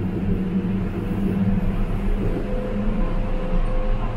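Gurgaon Rapid Metro train running on its elevated track, heard from inside the carriage: a steady low rumble with a constant hum over it.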